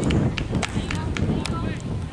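Outdoor soccer-match ambience: players' voices calling on the field, several short sharp taps, and a steady low rumble of wind on the microphone.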